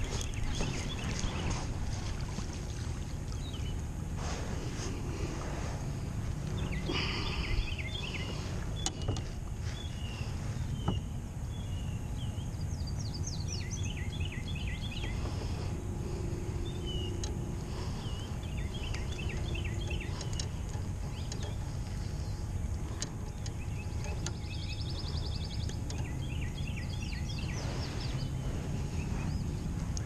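Electric trolling motor on a kayak humming steadily, with a few knocks of handling and, about halfway through and again near the end, birds calling in quick runs of short high notes.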